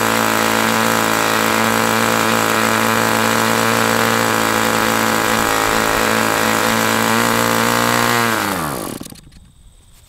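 Super Tigre G75 two-stroke glow engine running steadily with an 11x8 propeller on its first, rich break-in run. About eight seconds in it runs out of fuel: the pitch drops and the engine winds down and stops.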